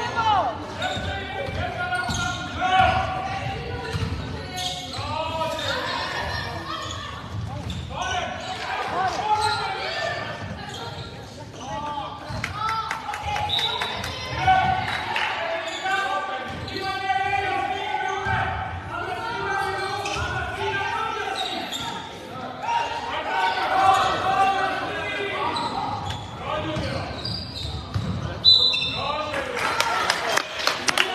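A basketball being dribbled on a wooden sports-hall floor during a game, with repeated bounces. Players' and spectators' voices call out throughout, echoing in the large hall.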